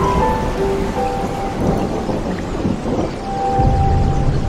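Intro music, a melody of short held notes, over rain and thunder sound effects, with a low rumble of thunder swelling near the end.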